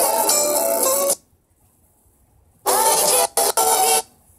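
Recorded music playing through the tablet's music app, cut off suddenly about a second in. After a gap of near silence, a second stretch of music starts partway through, drops out twice briefly and stops near the end.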